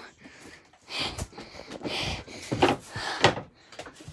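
Irregular thumps, knocks and rustling as a barefoot child scrambles across a makeshift obstacle course of chairs and furniture. There is a sharp knock about a second in and a few more near the end.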